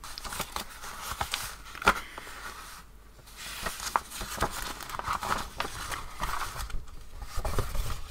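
Paper parcel wrapping rustling and crinkling as it is unwrapped by hand, with washi tape being peeled off the paper and a sheet of handmade khadi paper unfolded. Irregular crackles and rustles, briefly pausing twice.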